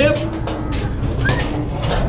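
Cattle being driven onto a metal livestock trailer: repeated knocks and clatters of hooves and gates, a steady low tone underneath, and a man's short shouts at the animals.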